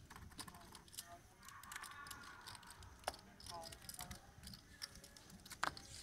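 Poker chips clicking and clattering as players handle and riffle their stacks at the table, faint and irregular.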